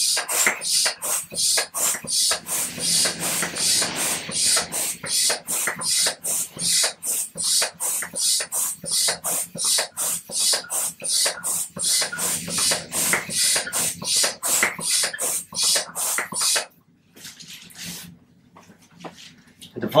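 Hand-operated vacuum pump drawing air out of a full body vacuum splint: a fast, even run of hissing strokes, about three a second, stopping about three-quarters of the way through. Each stroke pulls air from the mattress so the splint hardens around the patient.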